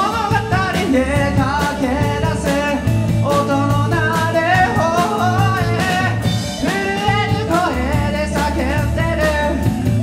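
Live rock band playing: a male lead singer over electric guitars, electric bass and a drum kit.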